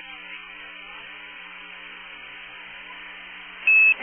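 Open radio communication link between transmissions: a low hiss with a faint steady hum, then a short high-pitched beep near the end.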